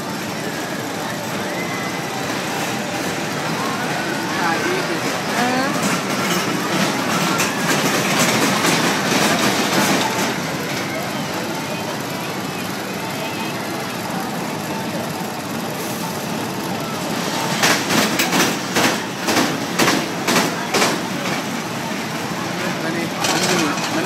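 Fairground din from a small kiddie roller coaster, its train of cars rumbling along the steel track, with a run of rapid clattering about three-quarters of the way through, over background crowd chatter.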